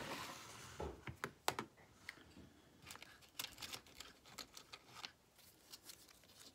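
Faint handling noises: a brief sliding rustle at the start as a whiteboard is pushed across a wooden table, then scattered light clicks and taps as fraction pieces are picked out of a wooden box and set down on the table.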